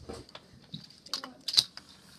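Handling noise as a sheet of paper is picked up with a handheld microphone in the same hand: a quick run of short clicks and rustles, the loudest knock about a second and a half in.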